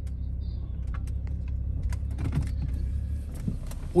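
BMW car heard from inside the cabin while driving: a steady low rumble of engine and road noise, with a few faint clicks.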